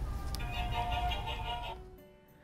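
Santa Jack Skellington animated figure's built-in sound module playing a short tune, with a low rumble underneath; it starts suddenly and cuts off shortly before two seconds.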